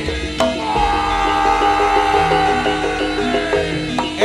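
Live East Javanese jaranan music: repeated percussive melody notes over a drum and gong bass, with a sharp strike just before half a second in. A long held melody note starts about half a second in and slowly sinks in pitch before breaking off near the end.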